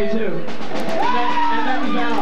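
Live rock band playing: electric guitars and drums, with a voice whose pitch bends and slides over them, and one note held near the end.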